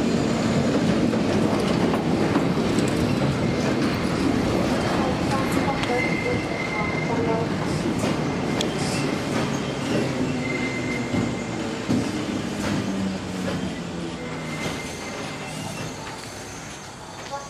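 A Berlin S-Bahn electric train running along the platform, its wheels rumbling and clattering on the rails, with a faint high wheel squeal a few times. The sound eases off over the last few seconds.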